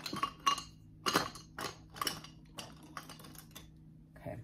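Makeup brushes clicking and knocking against each other and their holders as they are picked out by hand, in a string of irregular light clicks about two a second.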